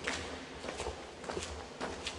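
Footsteps walking on the tunnel floor, short steps about twice a second, over a steady rush of running water.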